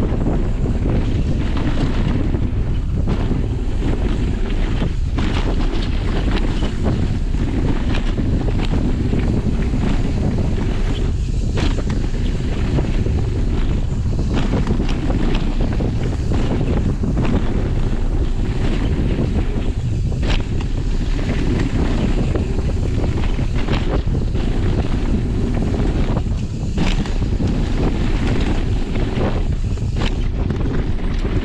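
Wind buffeting the microphone of a camera on a mountain bike riding down a rough gravel trail. There is a steady deep rumble, with scattered knocks and rattles from the bike and tyres over stones.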